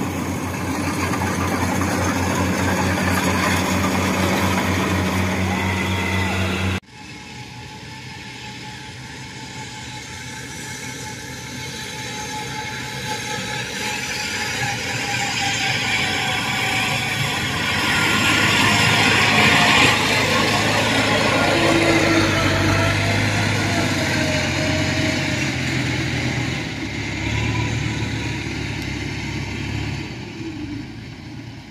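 Diesel engine of a Kubota DC-series rice combine harvester running steadily and loudly close by; it cuts off suddenly about seven seconds in. After that, a tracked carrier loaded with rice sacks runs across the field, its engine growing louder toward the middle and easing off near the end.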